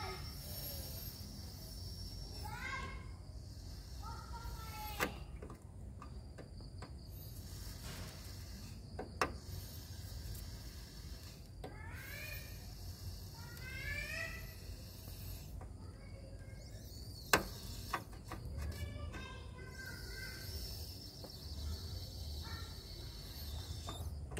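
Hot soldering iron held on a damp radiator seam: faint sizzling and bubbling as water trapped in the seam boils at the tip, with three light ticks spread through.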